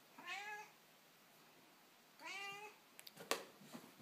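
A cat meowing twice, two short calls about two seconds apart, followed near the end by a few sharp clicks.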